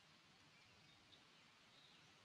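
Near silence: faint outdoor ambience with a single faint click about halfway through.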